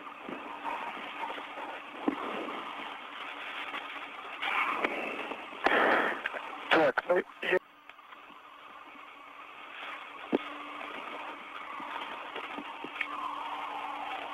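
Space-to-ground radio channel from an International Space Station spacewalk: a steady hiss with a faint low hum, and a few louder bursts of static and sharp clicks about five to seven seconds in.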